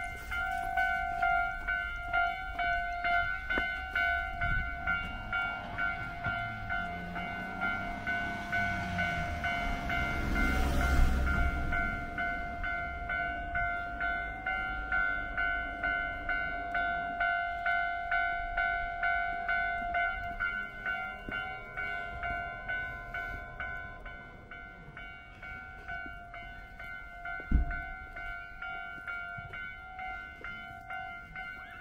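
Japanese railway level-crossing alarm bell ringing over and over in an even two-tone ding. A Keio line train rushes through the crossing, swelling to its loudest about eleven seconds in and then fading. A single sharp knock comes near the end.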